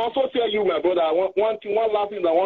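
A person talking steadily; the voice sounds thin, like speech heard over a phone line or radio.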